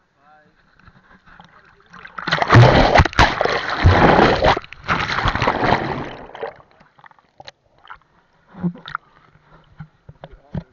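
Seawater splashing and churning over a waterproof action camera as a wave washes over it and it goes under. The rush starts about two seconds in and lasts some four seconds, then gives way to a few small splashes.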